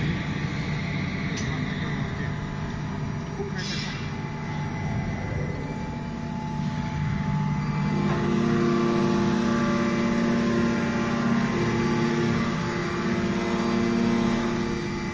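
Steady hum of a 1,600-ton aluminium extrusion press's hydraulic system running under test. It grows louder about eight seconds in, with a stronger, higher hum on top, and there is a single sharp click about a second in.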